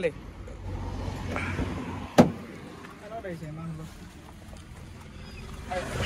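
A small hatchback's car door shut once, a single sharp thud about two seconds in, over a low steady hum.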